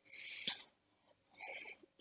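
Two short, soft breaths close to a microphone: one at the start and one about a second and a half in, with silence between.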